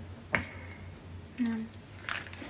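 A pause in conversation: a single sharp click about a third of a second in, then a short, quiet spoken "no".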